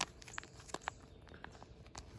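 Foil MRE retort pouch crinkling faintly as it is flexed and turned in the hands, with a few scattered, irregular clicks.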